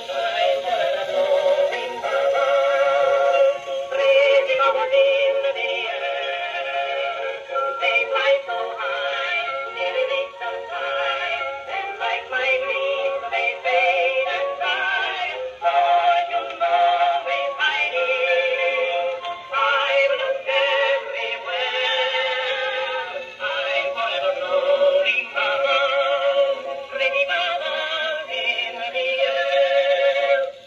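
Edison Amberola cylinder phonograph playing a Blue Amberol cylinder record: an early acoustic recording of a song with a singing voice. It comes through the horn with little bass or treble.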